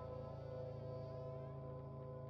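Faint ambient background music: a steady, low buzzing drone of held tones.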